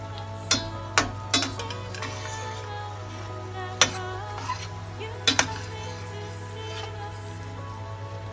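A spatula knocking and scraping against a stainless steel frying pan as pasta in a creamy sauce is stirred: a handful of sharp clacks spread through the first five or so seconds. Steady background music plays under it.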